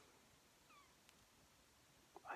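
Near silence: room tone, with one faint, short falling call a little under a second in and a faint tick just after.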